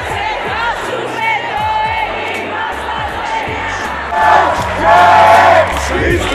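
A marching crowd chanting and singing over amplified music with a bass line and beat. The crowd's chant swells noticeably louder about four seconds in.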